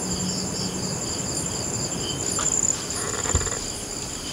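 Crickets chirping in a steady, high, pulsing trill. A single knock sounds about three seconds in.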